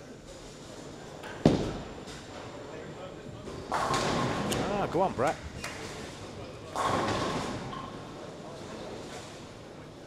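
Ten-pin bowling centre noise: a sharp thud about a second and a half in, the loudest sound, then two stretches of rattling clatter around four and seven seconds in, with a few brief wavering tones between them.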